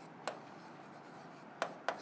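Pen writing on a board: sharp taps of the tip on the surface, once about a quarter second in and twice near the end, with faint scratching between.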